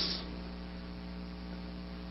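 Steady electrical mains hum with a faint hiss underneath, a buzz of many even tones from the recording's electrical background.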